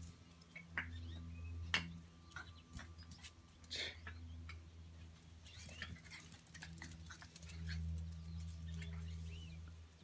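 Miniature schnauzer puppies' claws and paws clicking and pattering on a concrete floor as they run, faint and scattered, over a steady low hum.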